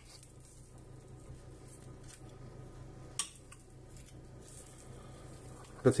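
Metal kitchen tongs and spoon handled over a glass baking dish: mostly quiet, with a faint low hum, a light click at the very start and one sharper click about three seconds in.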